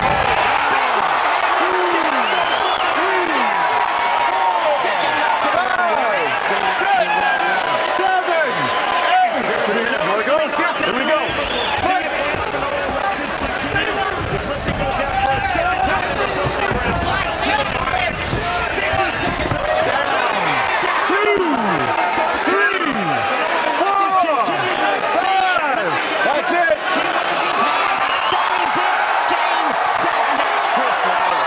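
Fight crowd shouting and yelling without a break, many voices over one another, with scattered thumps from the ring.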